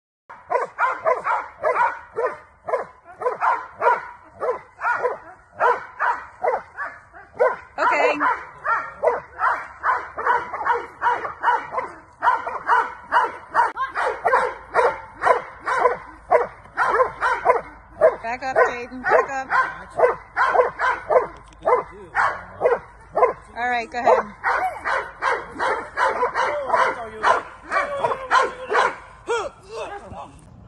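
Belgian Malinois barking rapidly and without pause, about two to three barks a second. It is a bark-and-hold: the dog holds a person in place by barking at him instead of biting.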